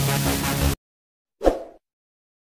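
Electronic dance music that cuts off suddenly under a second in, then a single short pop sound effect: the click of an animated subscribe button.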